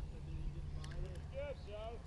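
Faint, distant talking over a low, steady rumble.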